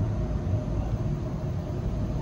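Low rumble of a passing road vehicle, swelling and then easing, with a faint steady hum over it.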